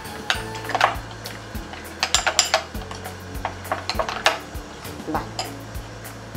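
Metal fork stirring mayonnaise in a small glass bowl, clinking against the glass in quick irregular bursts of taps.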